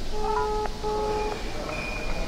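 A smartphone on speaker playing two short electronic tones, one right after the other, as the phone call goes through.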